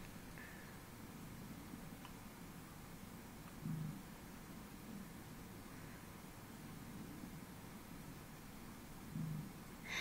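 Faint looped playback of a home recording's audio through a graphic equaliser that lifts the low bands: a low hiss with two short low tones, one near the middle and one near the end. It is a tight low-pitched sound of unknown origin, which the investigator doubts is a dog's growl.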